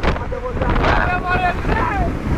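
Heavy storm wind buffeting the microphone in loud, uneven gusts, with a dense rumble underneath.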